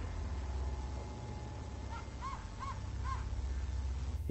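Three short, faint bark-like calls from an unseen animal across a field, about half a second apart, a little past the middle, over a steady low hum. To the homeowner the barking didn't really sound like a dog, almost like something mimicking one.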